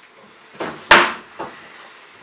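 Kitchen handling noise: a short scrape, then one sharp knock about a second in, followed by a lighter knock.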